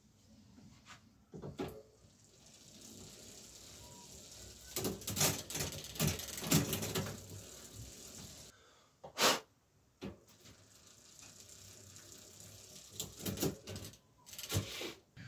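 The drivetrain of a Kona Kilauea mountain bike is being worked by hand on a workstand during rear-derailleur adjustment. The chain runs over the cassette and derailleur pulleys with a rattle. There are louder clicks and clatter about five to seven seconds in, and a single sharp click a little after nine seconds.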